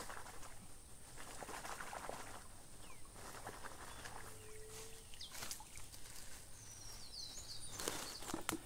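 Faint, irregular splashing and rustling as a bag is rinsed out in pond water at the bank, with a few short bird chirps near the end.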